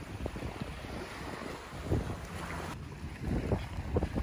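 Wind rumbling on the microphone over small waves washing up onto a sandy beach.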